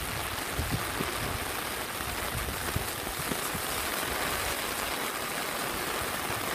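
Heavy rain pouring steadily onto a wet street, an even hiss.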